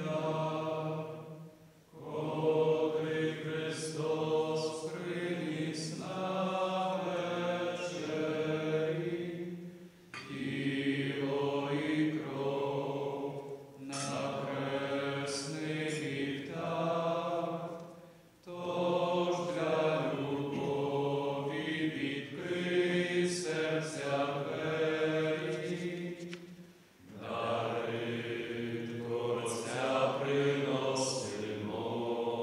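Men's voices singing a slow church hymn during the offertory of a Roman Catholic Mass, in phrases of about eight seconds with short breaths between.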